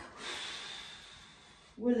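A woman's long audible breath out, a hiss that fades away over about a second and a half, exhaled on the effort of a prone chest-and-leg lift.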